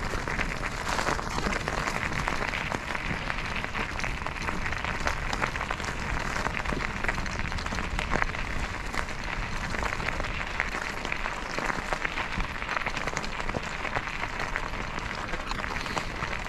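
Bicycle tyres rolling over a loose gravel surface: a steady, dense crackle of stones.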